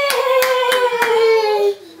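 Hand clapping, about four claps, under one long, high vocal cheer that slowly falls in pitch and ends just before the two seconds are up.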